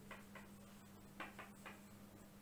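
A handful of faint, short scratches of a marker pen writing on a whiteboard, over a steady low hum.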